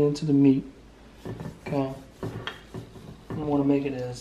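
A plastic spice shaker being shaken over raw steaks, giving a few short clicks and rattles, while a man's voice comes and goes in short stretches.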